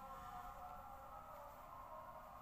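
Faint call to prayer (ezan), the muezzin's voice holding one long note.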